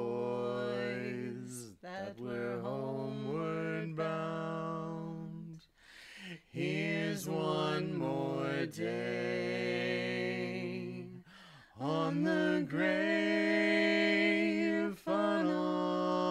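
Two voices singing a slow a cappella folk song together in harmony, in long drawn-out notes with short breaths between phrases.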